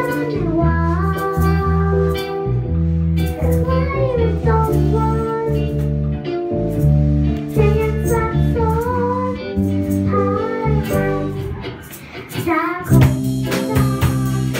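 A girl sings a pop song into a microphone, backed by a live children's band on drum kit and keyboards. The band drops back briefly near the end, then comes in fuller.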